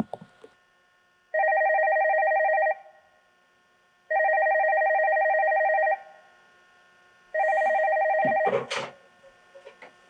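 Push-button desk telephone ringing three times, each ring a steady warbling trill of about one and a half to two seconds. The third ring stops short as the handset is picked up, with a brief clatter of handling.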